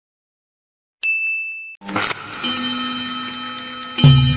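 A short, high ding about a second in, then a louder metallic clang that rings on with several steady tones, fading slowly.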